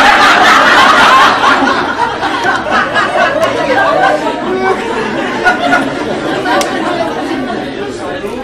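Audience in a meeting hall laughing and chattering together, loudest at the start and slowly dying down.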